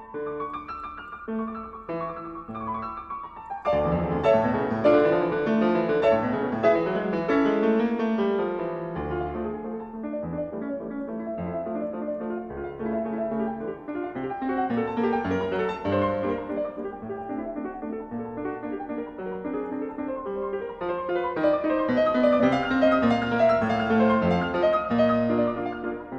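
Background piano music, a flowing melody with chords that grows fuller and louder about four seconds in.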